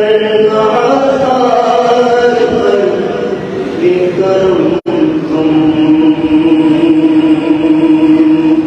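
A man's voice chanting an Urdu naat, unaccompanied, into a microphone, with long drawn-out held notes. The sound drops out for an instant a little past halfway.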